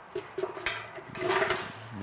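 Plastic litter bag rustling, with a few light clicks from the litter picker, as rubbish is handled and speared. There are three sharp clicks in the first second and a longer rustle around the middle.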